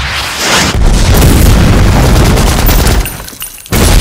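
Film battle sound effects: a loud explosion boom under a second in, then a sustained rumble of blasts and gunfire. Near the end it drops briefly before another sudden loud hit.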